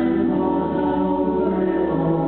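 Live folk band playing: acoustic guitars under several voices singing together in harmony on held notes.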